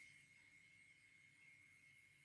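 Near silence: a pause in the narration with only a faint steady electronic tone and low hum from the recording.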